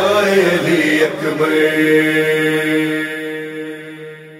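A noha's closing: a chanted voice finishes a gliding phrase in the first second or so over a held, humming vocal drone of steady notes, which then fades out toward the end.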